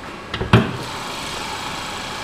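Car hood on a 2014 Chevrolet Malibu being unlatched and raised: a few light clicks, then one sharp thump about half a second in. After that comes the steady hum of the Ecotec four-cylinder engine idling under the open hood.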